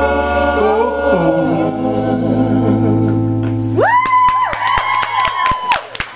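A live band's closing chord, acoustic guitar and other strings with a low bass note, holds and rings out under the last sung note. A little under four seconds in, applause breaks out: scattered clapping with a loud high held tone over it.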